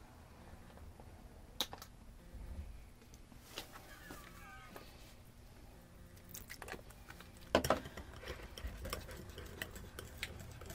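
Quiet kitchen handling: a few isolated clicks, then from about seven and a half seconds in a run of quick clicks and scrapes as a wire whisk works garlic butter in a ceramic bowl.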